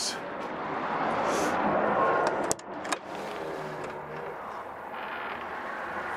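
Road traffic noise, a vehicle going by, swelling over the first two seconds and then dropping off sharply about two and a half seconds in to a quieter steady background.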